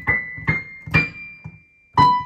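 Single high piano notes struck one after another, about two a second, each ringing briefly and stepping upward in pitch.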